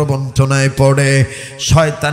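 A man's voice preaching in a chanted, sing-song delivery, drawing each syllable out on a steady pitch, several held notes in a row.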